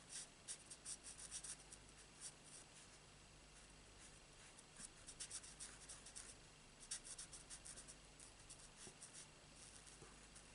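Stampin' Blends alcohol marker nib scratching across cardstock as hair is coloured in, in faint clusters of quick short strokes.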